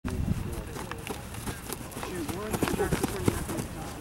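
Several indistinct voices of football players and coaches talking and calling out, with a few sharp claps or knocks mixed in.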